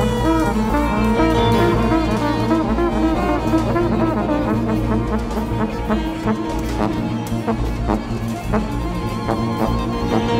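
Jazz ensemble music: held horn lines over a low, steady bass, with short sharp notes coming in about halfway through.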